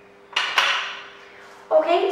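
A brief clatter about a third of a second in, dying away over about a second; a woman starts speaking near the end.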